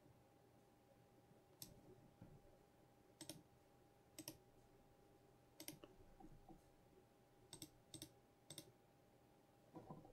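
Faint computer mouse clicks, a handful spread a second or two apart, some in quick pairs, over near-silent room tone.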